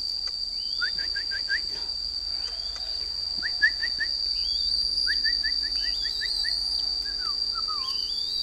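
A steady high insect drone runs throughout. Over it come three runs of quick, short rising bird chirps, about five, then four, then seven notes in a row, with some thin higher whistles between them.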